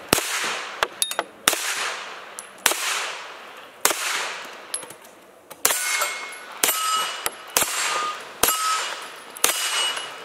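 Hi-Point 995 9mm carbine fired one shot at a time, about nine rounds at roughly one-second intervals, each crack trailing off in a short echo. In the second half the hits on steel plate targets ring with a clear metallic clang after the shots.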